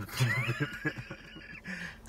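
A man laughing in a quick run of short pulsed ha's that fades after about a second.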